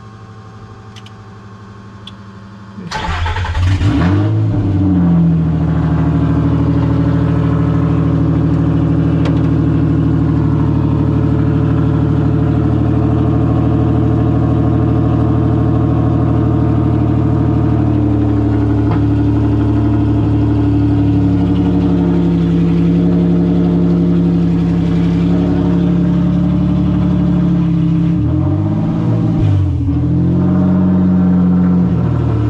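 Nissan Xterra race truck's engine cranking and starting about three seconds in, after a low hum with a couple of clicks, then running at a steady idle. The idle speed shifts upward partway through and dips and rises briefly near the end.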